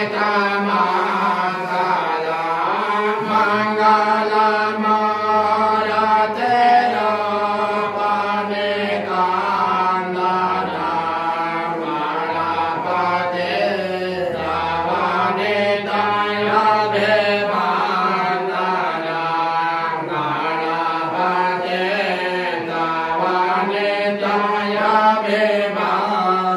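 A Hindu priest chanting puja mantras in a continuous, unbroken recitation into a handheld microphone.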